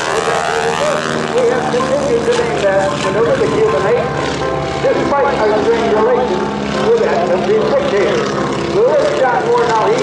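Boeing-Stearman Model 75 biplane's radial engine and propeller droning through an aerobatic display, the pitch shifting as the plane manoeuvres.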